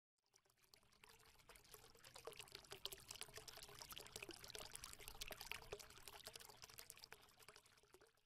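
Faint crackling, trickling sound effect made of many tiny clicks, swelling in about a second and a half in and fading out near the end.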